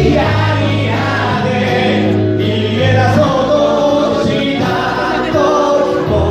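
A group of people singing together in chorus, holding notes that change every second or two over sustained low notes.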